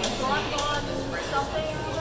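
People talking over background music, with a steady low hum underneath.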